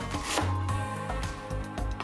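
Chef's knife chopping Napa cabbage on a plastic cutting board, a few crisp cuts through the leaves, over background music.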